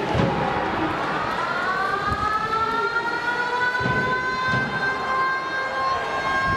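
Koshien Stadium's game-start siren winding up: its pitch rises over about two seconds, then holds a steady wail. It marks the start of play.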